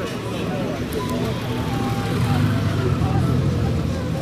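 Honda Gold Wing GL1800's flat-six engine as the motorcycle rolls slowly past close by. Its low engine note swells to its loudest a little past halfway and eases off near the end.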